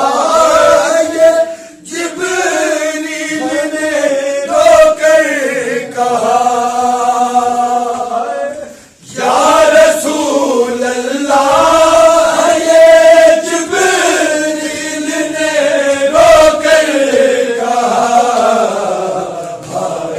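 Men chanting a noha, a Shia lament, together in long melodic lines, breaking off briefly about two seconds in and again about nine seconds in.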